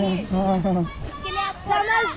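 Speech only: people in a group talking, with a high-pitched voice loudest in the first second.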